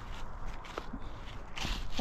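Footsteps and rustling on a wet forest floor of grass and leaf litter, with a louder rustle near the end.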